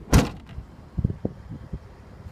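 Rear liftgate of a 2008 Jeep Patriot slammed shut: one loud slam just after the start, followed by a few softer knocks about a second later.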